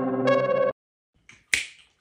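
Intro music of sustained electric-piano or synthesizer chords that cuts off abruptly under a second in, followed by a single sharp finger snap about a second and a half in.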